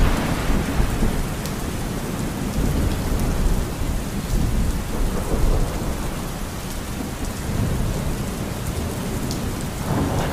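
Steady rain with a low rolling rumble of thunder, loudest at the start, easing, then swelling again in the middle.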